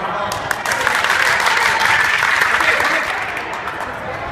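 A group of young players clapping, starting about half a second in, building up and thinning out near the end, with voices mixed in.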